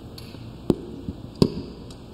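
Two sharp knocks against a quiet background, the first under a second in and the second about three-quarters of a second later.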